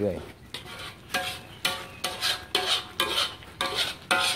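A spatula scraping and stirring thick fish-innard curry paste around a large metal wok, in repeated strokes about two a second, each with a faint metallic ring. The curry is being reduced down.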